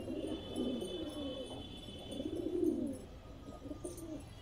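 Several domestic pigeons cooing, their low coos overlapping.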